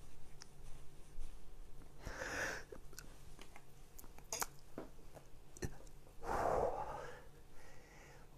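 Small clicks and scrapes with two soft noisy puffs, about two and six seconds in, picked up close on a microphone that has lost its foam windscreen, so they come through a bit scrapey.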